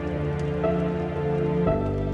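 Slow, melancholic solo piano music over steady falling rain; new piano notes come in about two-thirds of a second in and again near the end.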